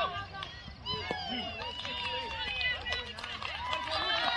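Spectators and players at a youth baseball game shouting and yelling at once, with many voices overlapping in rising and falling calls, as a play is made at second base.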